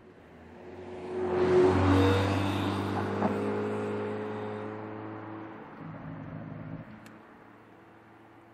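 Porsche Panamera 4 E-Hybrid Sport Turismo passing close by and driving away, its 2.9-litre twin-turbo V6 running at a steady note. The sound peaks about two seconds in and then fades gradually as the car recedes.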